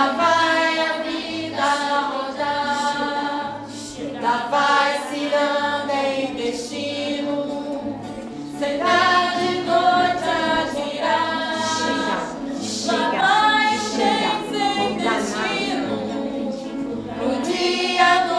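A group of girls singing a song together, with a woman strumming an acoustic guitar in a steady rhythm beneath the voices. The singing runs in phrases with short breaths between them.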